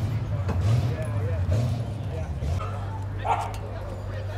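A low engine rumble, uneven at first and then steady, under voices, and a dog barks once a little over three seconds in.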